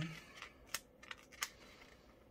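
A paper sticker being picked and peeled off a sticker sheet with fingernails, giving a few faint small clicks and crackles.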